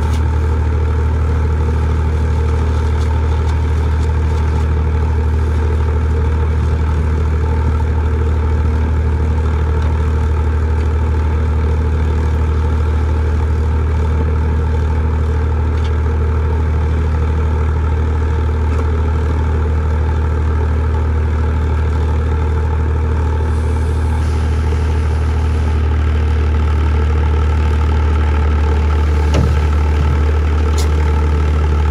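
Engine of a trailer-mounted concrete screed pump running steadily at one constant speed, a deep even hum, with a light knock near the end.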